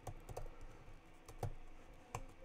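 Typing on a computer keyboard: a few soft, separate keystrokes, the clearest one a little past the middle.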